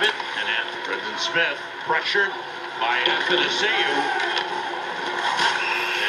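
Ice hockey game broadcast playing from a television: a steady din with snatches of indistinct voices.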